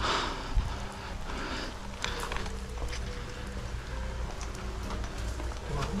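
Footsteps walking onto a tiled porch, with a rustle at the start and a low thump a little over half a second in, over a steady low background rumble.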